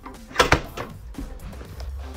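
Pop-up toaster's lever pushed down and latching, two sharp clicks close together about half a second in.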